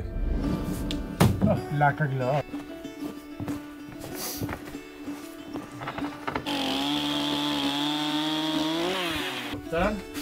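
Background music, and from about two-thirds of the way in a Stihl chainsaw cutting through a board for about two and a half seconds, running at a steady pitch before it stops.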